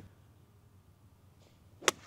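A golf ball struck with a 60-degree wedge: one sharp, crisp click of the clubface on the ball near the end, after a faint swish of the swing. It is a clean strike.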